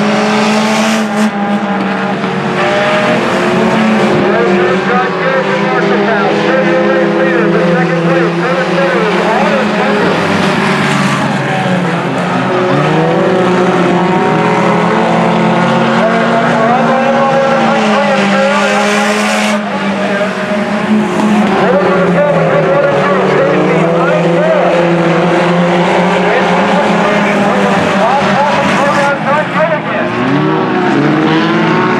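A pack of sport compact race cars' four-cylinder engines running hard on a dirt oval. Several engine notes overlap, rising and falling as the cars pass and lift for the turns.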